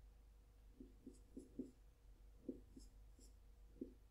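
Marker writing on a whiteboard: about eight short, faint taps and strokes as figures are written.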